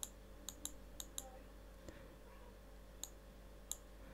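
Faint computer mouse clicks, about eight at irregular intervals, as the page is scrolled, over a steady low electrical hum.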